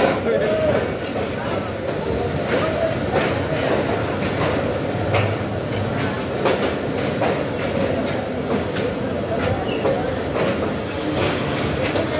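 Passenger coaches of the Tezgam express rolling out on the neighbouring track, wheels clacking over rail joints at irregular intervals, over the chatter of a platform crowd.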